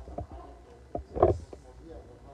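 A few short knocks, the loudest a little over a second in, over faint background voices.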